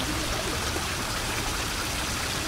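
Steady running water, like a trickling stream, with small gurgles.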